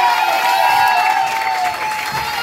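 Audience clapping and cheering.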